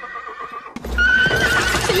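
A horse neighs loudly, cutting in suddenly just under a second in over the sound of its hooves. Before it, the last held chord of the music dies away.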